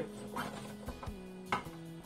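Soft background music with held notes, and a light knock about one and a half seconds in.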